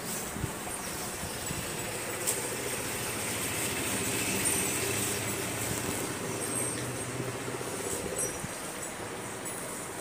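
A motor running steadily, growing louder toward the middle and easing off near the end.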